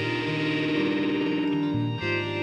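1971 Gibson Les Paul Recording electric guitar played through a 1974 Fender Deluxe Reverb amp, over a looped backing part recorded on the same guitar. One note is held through most of this, with a brief dip in loudness near the end.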